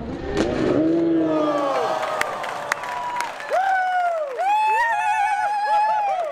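Men shouting and whooping encouragement without clear words, with a few sharp claps. From about halfway through the calls become long and high, wavering near the end.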